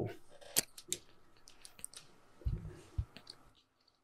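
A few light, sharp clicks spread over the first two seconds, followed by a couple of soft low thumps.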